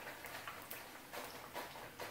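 Plantain slices frying in shallow hot oil: a faint sizzle with small scattered crackles and ticks.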